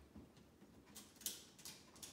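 Faint handling noise from a tape measure held against a picture frame: three short soft clicks or rustles about a second in, over near silence.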